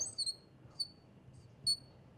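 Felt-tip marker squeaking on a glass lightboard as it writes, in a handful of short, high squeaks.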